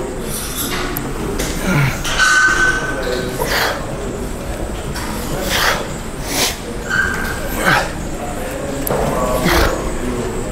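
A man breathing out hard and grunting with the effort of each repetition of a cable back exercise, one forceful breath every second or two, over the steady noise of a gym.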